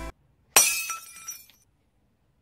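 A single sudden crash about half a second in, with a bright ringing tail that dies away within a second.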